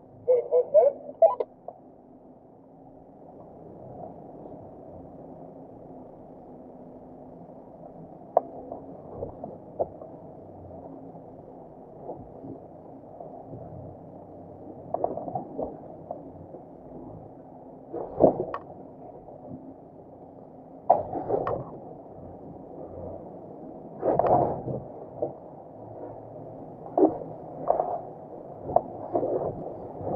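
Land Rover Defender 110 engine running at a low, steady idle in low-range crawler gear, holding the vehicle back on engine braking alone as it descends rock steps. The sound is a muffled drone, broken by irregular sharp knocks and clunks as the vehicle works over the steps.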